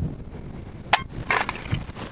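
A single sharp click about a second in: the Ruger PC Carbine's trigger breaking as a trigger pull gauge draws it back, at just over four pounds of pull. It is followed by a short rustle of handling.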